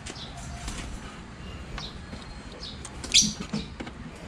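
A few short, high bird chirps scattered over a low steady background hum, the sharpest and loudest about three seconds in.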